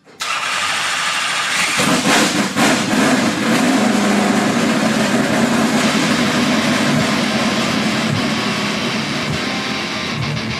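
A car engine starting up suddenly, then running loud and fairly steady, with a deeper steady engine note settling in about two seconds in.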